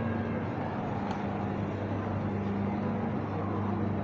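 Steady low hum and general background noise of a supermarket's sales floor.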